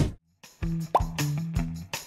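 Short cartoon-style transition jingle: soft music with short repeated low notes, and a quick upward 'bloop' sound effect about a second in.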